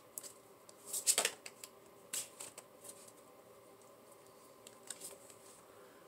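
Tarot cards being handled as a card is drawn from the deck: a few crisp snaps and slides in the first half, then fainter clicks near the end.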